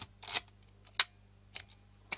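Olympus 35 RD rangefinder camera clicking as its shutter release is worked: a short cluster of clicks just after the start, a single sharp click about a second in, and a fainter click shortly after.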